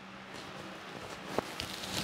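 Handling rustle and a small click about a second and a half in as a furry windscreen is fitted onto a clip-on wireless microphone transmitter, heard through that microphone, over a low steady hiss of air from an electric fan blowing at it.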